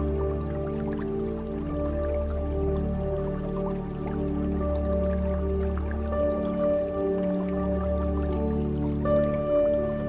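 Slow ambient meditation music of long held tones over a low drone, the chords shifting every few seconds, with light dripping water sounds in the background.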